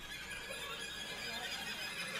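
Violins bowed as a noisy effect: a thin, scratchy squealing of bow on strings with faint wavering slides, in place of clear notes.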